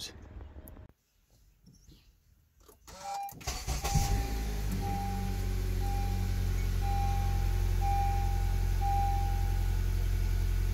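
Honda Accord engine starting about three and a half seconds in and settling into a steady idle, with a dashboard chime beeping about once a second over it. It catches and keeps running, with the throttle body freshly cleaned of the gunk that had kept its valve from opening.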